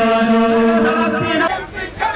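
A man chanting a slogan into a microphone over loudspeakers, holding one long drawn-out note that breaks off about one and a half seconds in, followed by a mix of voices.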